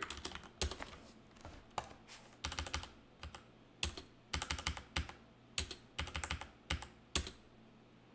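Computer keyboard typing: quick runs of keystrokes in clusters, stopping shortly before the end.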